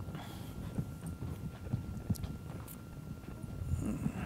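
Soft, irregular footsteps and low thumps in a large room, with a faint steady high hum underneath.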